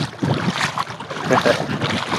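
Sea water splashing and sloshing around the legs of someone wading knee-deep through shallow water, with wind buffeting the microphone.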